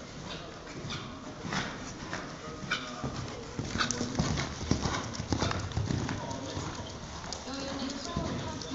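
Hoofbeats of a horse cantering on sand footing. They grow louder from about three to six seconds in as the horse passes close.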